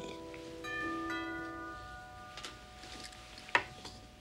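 Upright piano notes ringing out and fading, with a few higher notes struck about half a second and a second in. A sharp knock about three and a half seconds in.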